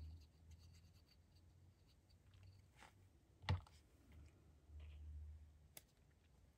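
Faint scratching and handling of small paper scraps and a squeeze bottle of tacky glue on a cutting mat, with one sharp tap about three and a half seconds in.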